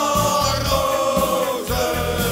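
Football supporters' song: a group of voices holds one long sung note over a band with a steady drum beat, the note ending about a second and a half in as the next phrase begins.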